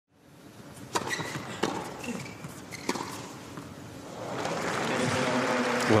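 Tennis ball struck by rackets three times in a short rally, sharp pops about a second apart with echo in an indoor arena, then the crowd's noise swells into cheering and applause from about four seconds in.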